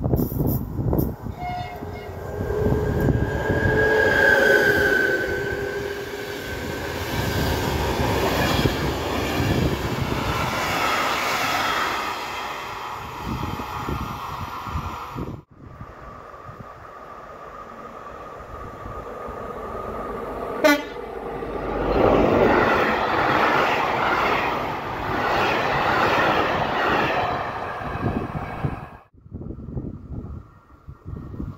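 Locomotive-hauled passenger train passing through a station: wheel and rail noise, with a horn sounded about four seconds in. After a sudden break, a second train comes through, loudest near the end.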